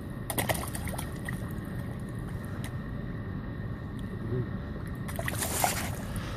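Bream splashing and thrashing at the water surface as they snatch food from a hand, in short bursts shortly after the start and again, louder, near the end. A steady low rumble runs underneath.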